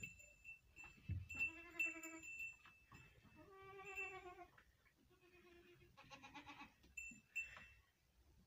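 Sheep bleating four times, with short gaps between the calls. The first call is the longest.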